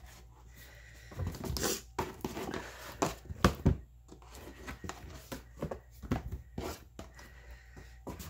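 Coffee-soaked paper pages being dipped, peeled apart and pressed down in a pan of coffee: irregular soft wet slaps, squelches and crinkles.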